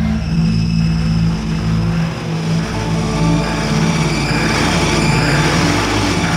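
Jeep engine running with a steady low drone, heard under background music.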